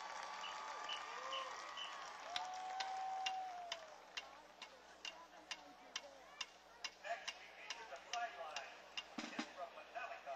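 Marching band drumline clicking a steady tempo with sticks, sharp even clicks about two a second, beginning after a couple of seconds. Faint voices fade out during the first few seconds.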